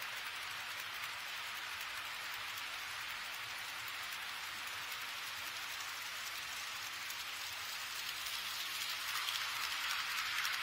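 HO-scale model trains rolling on KATO Unitrack: a steady hiss of small metal wheels on the rails, growing louder over the last couple of seconds as a train comes close.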